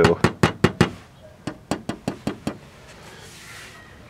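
Fingertip tapping on the glass dial face of a console set, showing that it is glass: two quick runs of about six light taps each.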